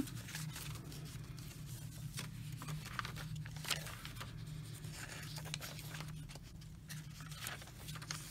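Paper pages and card inserts of a handmade junk journal being handled and turned: scattered soft rustles and paper flicks over a steady low hum.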